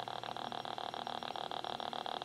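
Faint electrical noise from a small speaker driven by a DFPlayer Mini audio module between tracks: a rapid, evenly spaced ticking over a steady hum.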